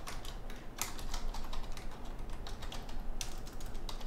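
Typing on a computer keyboard: quick, irregular key clicks, sparser for a stretch in the middle.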